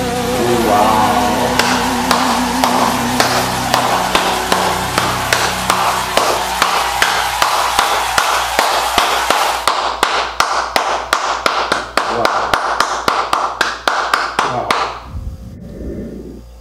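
Pop song music playing: a held, wavering sung note fades in the first seconds, then an even, fast beat of sharp strikes drives the full band. The beat grows starker about ten seconds in, and the music cuts off about a second before the end.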